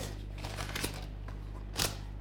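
Soft handling sounds of hands smoothing fondant down a cake and brushing the baking paper beneath it, with one sharp tap near the end, over a steady low hum.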